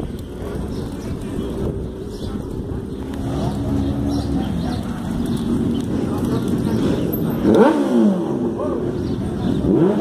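Street traffic noise of motor vehicle engines under a steady low rumble of wind on a moving microphone, with people's voices around. About eight seconds in comes the loudest sound, an engine revving up and back down.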